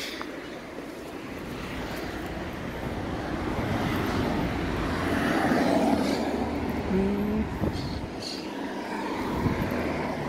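A road vehicle passing on the street, its noise swelling to a peak about five or six seconds in and then fading.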